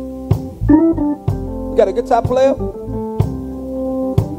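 Live gospel band: an organ and electric keyboard hold steady chords, with a few single drum hits, and a man's voice comes in twice in short phrases over the chords.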